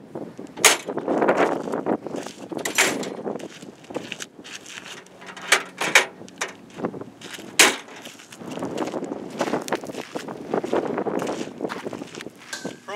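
Steel compartment doors of a pickup's utility service body being shut and latched: several sharp metal knocks and clunks a second or two apart, with handling noise in between.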